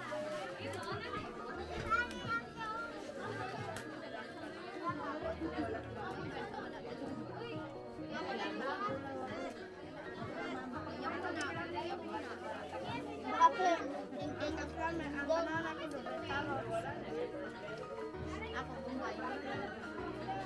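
Many children's and adults' voices chattering at once, with background music with a low bass line underneath. One brief sharp sound stands out about two-thirds of the way through.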